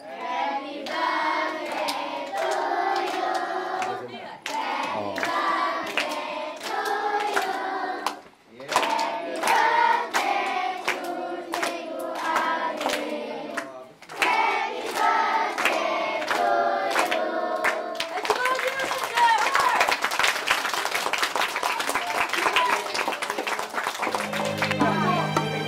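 A group of children singing a birthday song together in four phrases, clapping in time as they sing. About three-quarters of the way through, the song ends in a burst of applause with voices.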